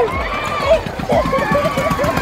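Several people's voices talking and calling out over each other, with rumble on the microphone underneath.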